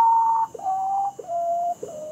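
Potoo call: a series of clear whistled notes, each lower and shorter than the one before. A long note ends about half a second in, two shorter notes follow, and a lower one starts near the end.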